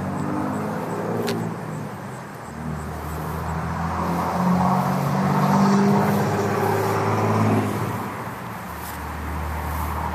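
A 1968 Corvette's 327 small-block V8 running at idle with a low, throaty note. It grows louder for a few seconds in the middle, then settles back.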